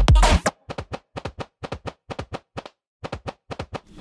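Soloed drum track from an electronic dance track: a reverse kick drum, a loud bass-heavy swell that cuts off sharply about half a second in. It is followed by a quicker pattern of short, lighter percussive hits, with a brief gap near three seconds.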